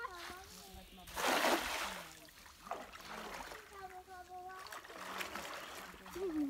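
One loud splash in shallow river water about a second in, lasting under a second, followed by lighter sloshing of the water.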